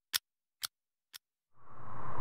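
Three evenly spaced sharp ticks, two a second, each fainter than the last. About a second and a half in, a rush of noise with a low hum begins to swell.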